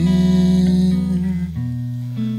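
Jazz guitar accompaniment: a chord rings on over a held bass note, and the bass note changes about one and a half seconds in.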